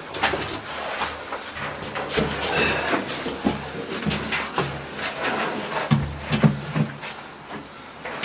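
Footsteps, scuffs and knocks of a person clambering over debris and past a loose rusty metal sheet in a small room, with many short irregular clatters.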